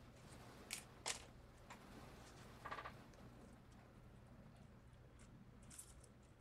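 Near silence: a steady low room hum with a few faint clicks and rustles as tomato-plant stems are handled and trimmed.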